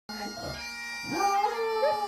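A Japanese Spitz howling along to bagpipe music from a television; a little after a second in the howl rises in pitch and holds over the steady drone of the pipes.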